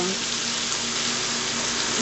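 Bacon and peas frying in a stainless steel pan as tomato passata pours in from a bottle: a steady sizzle.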